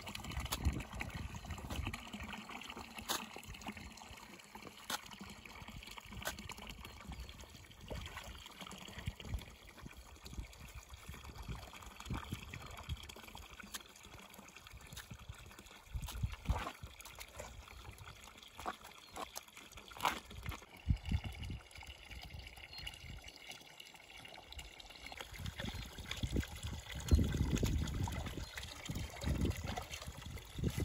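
Spring water trickling and pouring from a pipe spout into a concrete trough, with splashing and sloshing as algae is dragged out of the water with a stick. There are occasional sharp knocks, and a louder low rumble near the end.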